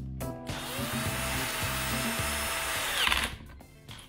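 Electric screwdriver running for about three seconds, driving a mounting screw into the inner body of a smart door lock; its motor whine rises as it starts and drops away as it stops.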